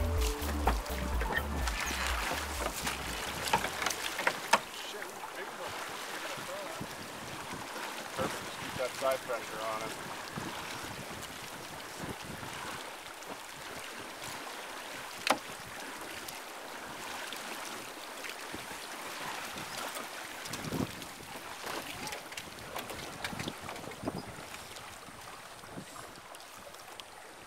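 Water splashing and lapping around a rowed drift boat on a river, with oar strokes and knocks in the first few seconds, then steadier water noise with wind on the microphone. A single sharp knock comes about fifteen seconds in.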